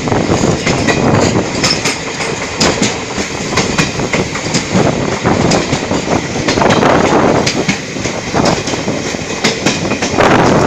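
Moving passenger train heard from aboard, with a continuous loud rumble of wheels on rail and frequent irregular sharp clacks from the wheels.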